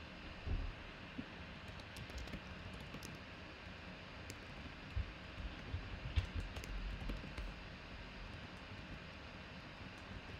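Faint typing on a computer keyboard and mouse clicks: scattered light taps, with a few low thumps about half a second in and around five to seven seconds in, over a steady background hiss.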